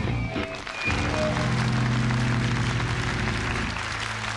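A live rock band of electric guitar, bass and drums ending a song: a last full chord is struck about a second in and left ringing with the cymbals washing over it, fading near the end.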